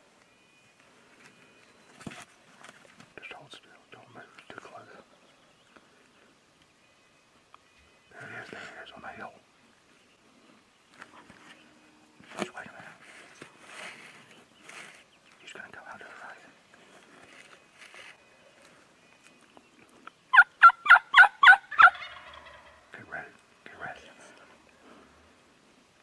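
Rio Grande wild turkey gobbler gobbling close by: one loud, rapid rattling gobble of about eight quick notes, a little over 20 seconds in.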